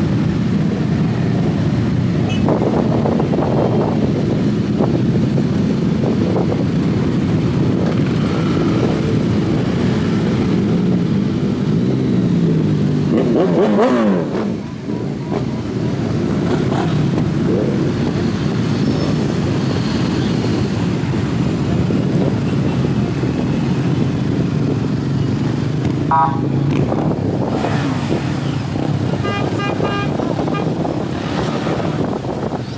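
A large group of motorcycles riding slowly past, many engines running together in a steady mixed rumble. About halfway through, one engine revs up and back down, and horns toot briefly twice near the end.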